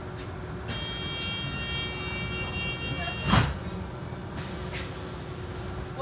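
Inside a moving Go-Ahead London bus: a steady low engine and road rumble. A high hissing whine with steady tones starts under a second in, lasts about two and a half seconds, and ends in a loud thump a little over three seconds in.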